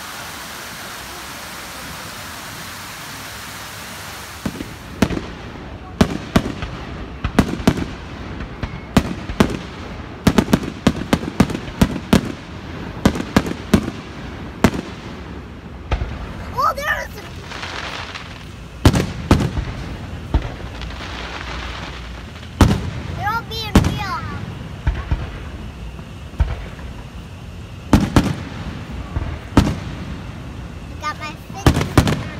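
Water running over a small rock cascade, then from about five seconds in fireworks going off: many sharp bangs and crackles in irregular clusters.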